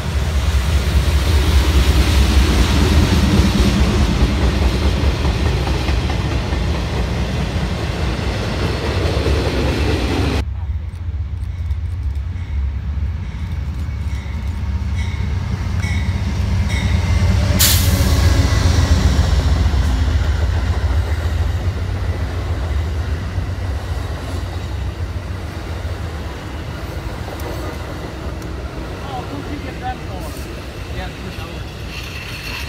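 A CN diesel freight locomotive passing at track speed, its engine rumbling strongly over the rolling freight cars. It then cuts suddenly to an Amtrak passenger train of bilevel Superliner cars rolling steadily by, with a single sharp click a few seconds after the cut.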